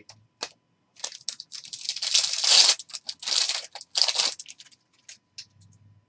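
Trading cards and their packaging being handled: a run of crinkling, rustling bursts, loudest about two seconds in, with a few faint ticks afterwards.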